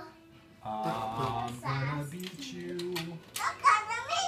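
A low man's voice humming a tune in held, stepped notes for about two and a half seconds, followed near the end by a few sharp clicks, the loudest just before the end.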